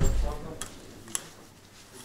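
A dull thump right at the start, then light rustling and a couple of sharp clicks as a black cloth tripod pouch is handled and pulled out of its packaging.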